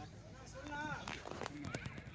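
Faint distant voices with a few light taps late on.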